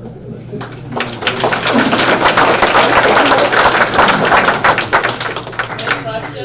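Audience applauding, the clapping building up about a second in and dying away near the end.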